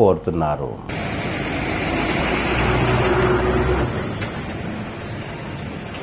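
Street traffic noise with a motor vehicle's engine passing close by, building to its loudest between about two and four seconds in, then fading to a steady street background.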